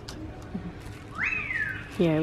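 A single whistle, starting a little past the middle, that rises quickly in pitch and then slides slowly down for most of a second.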